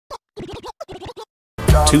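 A quick string of short, choppy record-scratch cuts, then a brief gap and a loud music hit with a shouted voice coming in about one and a half seconds in.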